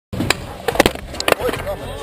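Skateboard wheels rolling on skatepark concrete with a steady low rumble, broken by three sharp clacks of the board about a third of a second, just under a second, and over a second in.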